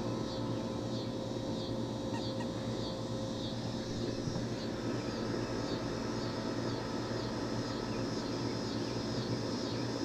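Outdoor background sound: a steady low hum with faint, short high chirps repeating through it.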